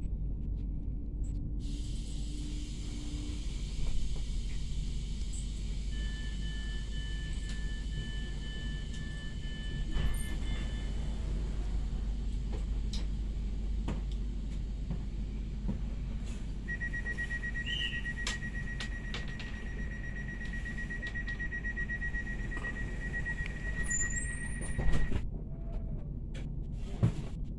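Pesa SunDeck double-deck coach standing at a platform, its equipment giving a steady low hum, with a hiss coming in about two seconds in. Past the middle a rapidly pulsing high beep starts and runs for about eight seconds, the door warning signal, and stops with a loud thump near the end as the doors shut.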